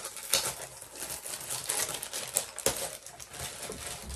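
A bag being opened and handled by hand: irregular rustling with scattered light clicks and taps.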